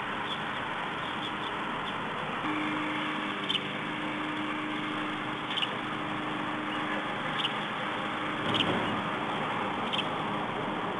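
Steady outdoor background noise through the nest webcam's microphone, with a faint steady hum from a few seconds in until about two-thirds of the way through. Four short, sharp clicks come a second or two apart.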